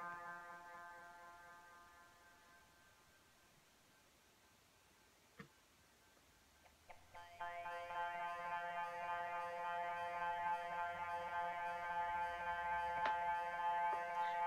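A eurorack synthesizer tone fades away over the first few seconds. After a near-silent stretch with a couple of small clicks, a steady held synth tone rich in overtones comes in about seven seconds in and sounds on unchanged.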